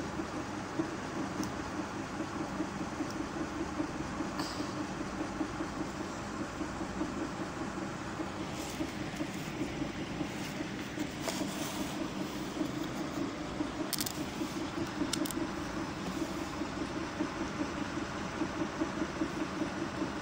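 A steady low mechanical hum with a fast, even flutter, with a few faint clicks and knocks over it.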